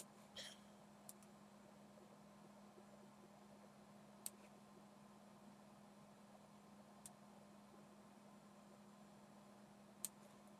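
Near silence with a faint steady hum, broken by a few soft computer-mouse clicks, the sharpest about four seconds in.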